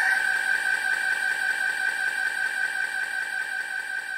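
A single held high electronic tone with a fainter lower tone beneath it, slowly fading out: the ringing tail of a hit in the backing music.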